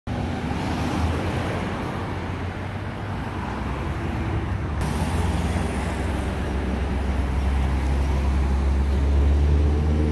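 Road traffic: cars and trucks running past, with a heavy truck's engine rumbling close by and growing louder toward the end. The sound changes abruptly about halfway through.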